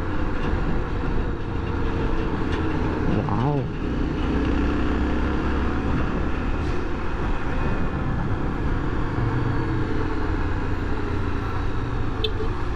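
Honda XRE300's single-cylinder engine running under way at road speed, with steady wind and road noise on the microphone.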